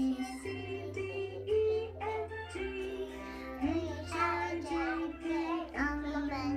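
A young child singing along with a music track: held notes over a bass line that changes about once a second.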